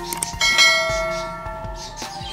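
A bell-like chime struck once about half a second in, ringing with several clear tones that fade away over a second and a half, the sound effect that accompanies a subscribe-button animation.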